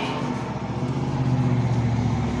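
A steady, low motor or engine hum that grows slightly louder about halfway through.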